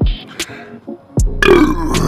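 A man lets out a loud, long burp that starts a little over a second in, brought up by gulping a boot of carbonated sparkling water. A hip-hop beat with drum hits plays underneath.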